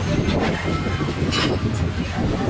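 Steady low rumble of passing street traffic, with a brief hiss about one and a half seconds in.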